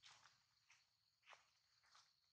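Faint footsteps of a long-tailed macaque rustling through dry leaf litter, four light crackles about half a second apart. A thin, steady high insect whine runs underneath.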